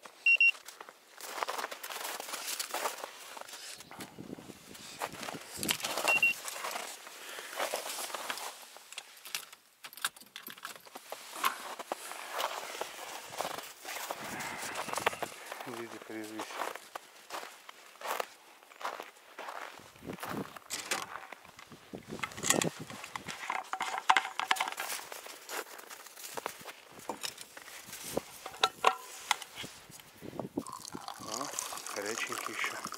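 Irregular crunching and rustling of footsteps in snow and of gear being handled, with two short high beeps in the first seconds.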